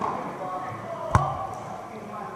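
A single sharp smack of a volleyball being struck, about halfway through, ringing in a large indoor hall over background chatter of voices.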